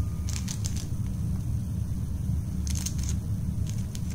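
Handling noise: a low steady rumble with two short clusters of crackly clicks, about half a second in and again about three seconds in.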